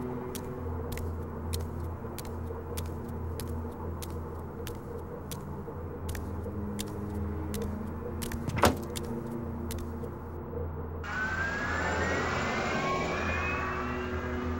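Sharp clicks at an even pace, about three a second, over a steady low hum, with one louder knock about eight and a half seconds in. Near the end the sound cuts to city street traffic, with a vehicle passing close and a rising whine.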